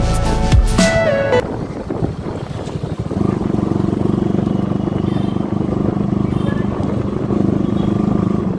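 Background music with a beat stops suddenly about a second and a half in. After it, a Bajaj Pulsar NS160's single-cylinder engine runs steadily as the motorcycle cruises along.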